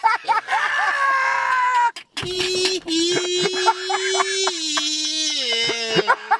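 A person's voice, first in quick, speech-like phrases, then holding one long wailing note that steps down in pitch near the end.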